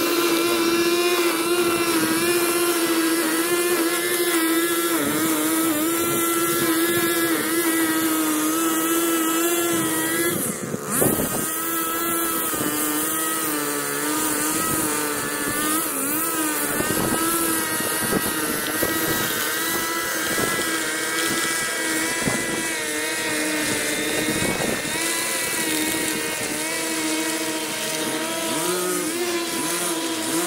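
Handheld gas string trimmer engine held at high speed with a steady whine while cutting grass along a driveway edge, dipping briefly about eleven seconds in before picking back up.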